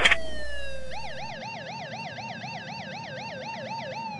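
Police car siren: a slow falling wail that switches about a second in to a fast yelp, rising and falling about four times a second.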